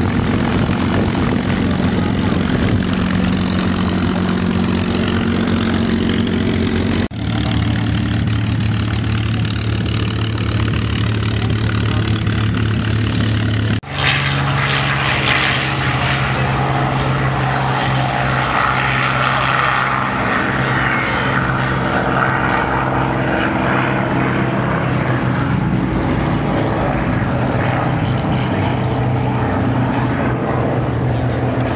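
Propeller aircraft engines in three shots joined by sudden cuts. First, a P-51D Mustang's Packard Merlin V-12 runs steadily on the ground. About seven seconds in, a different steady engine note follows. From about fourteen seconds in comes the steady drone of a B-17 Flying Fortress's four Wright Cyclone radial engines as it flies past.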